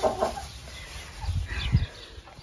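Cornish cross broiler chickens in a stock trailer giving a few faint, short clucks and peeps. A low rumble comes in around the middle.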